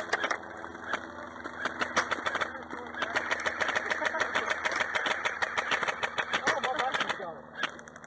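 Airsoft guns firing: rapid, irregular cracks of shots, several a second, with a short lull about seven seconds in.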